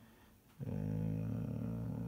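A man's drawn-out hesitation sound, a filler "eee", held on one steady pitch for about a second and a half, starting about half a second in.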